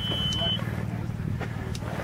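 A steady high-pitched electronic tone that cuts off about half a second in, over a steady low rumble.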